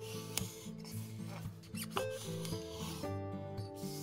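Kitchen knife cutting through a thick aloe vera leaf on a wooden board: rasping strokes of the blade through the leaf, with two sharp knocks about half a second and two seconds in, over guitar music.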